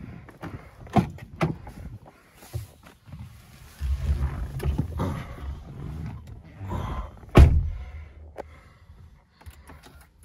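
A Toyota pickup's door being opened with a couple of latch clicks, then rustling and thumps as a person climbs into the cab. The driver's door is shut with a solid thud about seven seconds in, the loudest sound.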